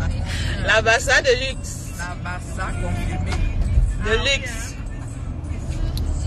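Steady low road and engine rumble inside a moving car's cabin, with voices rising briefly about a second in and again about four seconds in, and music.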